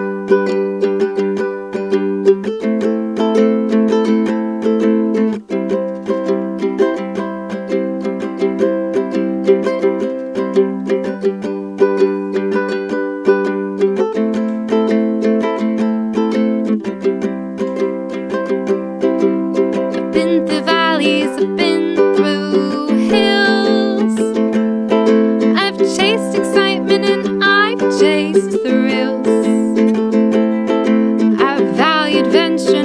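Ukulele strummed steadily through a chord progression, changing chord every few seconds. About two-thirds of the way through, a woman's voice joins in singing over the strumming.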